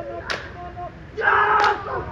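Haka performers: a held chanted call ends, a sharp slap of hands on the body comes about a third of a second in, then a loud group shout about a second in with another slap inside it.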